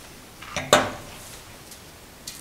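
A wine glass being handled on a tabletop: one short, sharp clink about three-quarters of a second in, then a few faint light knocks.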